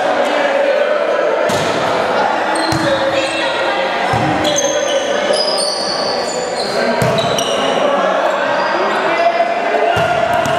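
A volleyball being struck with the hands a few times during a rally, each hit sharp and short. There are short high squeaks of sneakers on the gym floor, and a constant chatter of onlooking students underneath.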